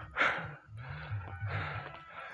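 A man breathing hard close to a clip-on microphone, with a loud breathy exhale about a quarter second in and then low voiced murmurs between breaths: out of breath from climbing a steep incline.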